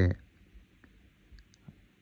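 A man's voice breaks off, then near quiet with a few faint, sharp clicks spread across the pause.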